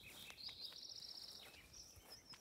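Faint, high, rapid trill of a small songbird lasting about a second, followed by a shorter high call near the end.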